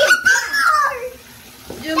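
A child's high-pitched shout or squeal that falls in pitch over about a second, with a brief splash or knock at its start. A voice begins speaking just before the end.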